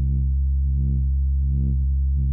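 Synthesizer drone whose filter cutoff is modulated by a ChaQuO chaos-circuit output. It holds a steady low pitch while the tone brightens in short, uneven swells a few times, as the circuit settles into a new equilibrium after a parameter change.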